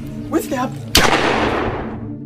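A single gunshot about a second in: one sharp crack with a long fading tail. A brief shout comes just before it, over a steady music drone.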